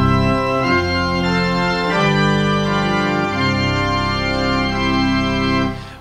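Organ playing the introduction to the entrance hymn: held chords that change every second or two, dying away near the end just before the singing starts.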